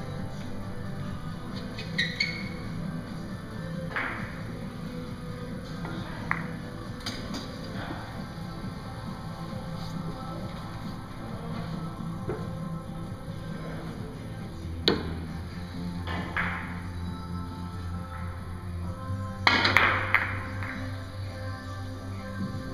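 Background music with the sharp clacks of Russian billiards balls struck by the cue and knocking together. Single clacks come every few seconds, and a quick cluster of collisions near the end is the loudest moment.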